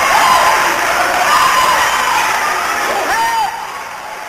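Congregation cheering and shouting, scattered whoops and calls over dense crowd noise, fading down gradually.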